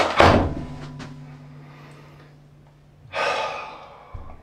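A wooden door slams shut right at the start, with a sharp crack and a short heavy rumble. About three seconds later a person takes a loud, sharp breath.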